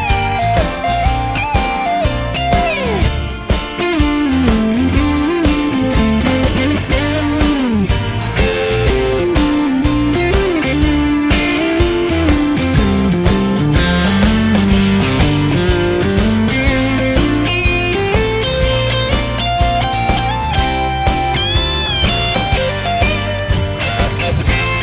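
Electric guitar lead played on a Vox semi-hollow guitar through a Vox AC30 amp head: a melodic solo line with frequent string bends, over a band backing track with steady drums and bass.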